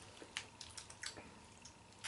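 Faint, scattered crackles and clicks over quiet room tone: crunchy rice crackers being chewed.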